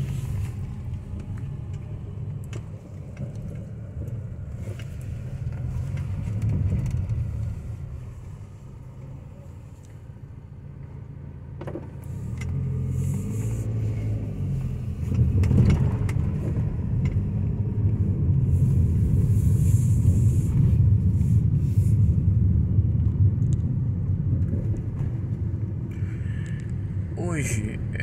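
Car driving slowly through town streets, heard from inside the cabin: a steady low engine and road rumble that dips briefly and then grows louder about halfway through.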